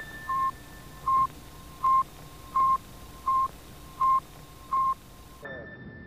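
A short electronic beep on one pitch, repeating evenly about every three quarters of a second, seven times, over a steady hiss with a faint high whine. Near the end the hiss cuts off and gliding tones begin.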